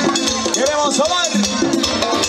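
Live cuarteto band playing through a stage sound system, with a steady percussion beat and a voice over the music.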